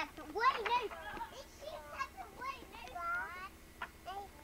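A toddler's voice babbling and squealing in short, high-pitched calls, without clear words.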